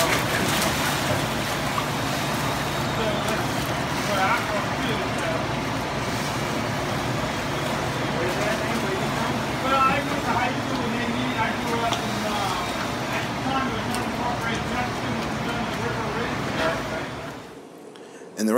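Several people talking in the background over a steady low hum, in live outdoor sound. The sound cuts off suddenly about half a second before the end.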